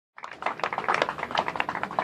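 Applause from a small group of people: many quick, irregular hand claps.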